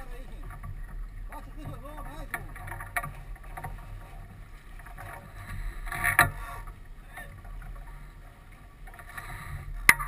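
Sailboat under way: steady rush of water and wind on deck, broken by a few sharp clicks and knocks, the loudest about six seconds in and just before the end.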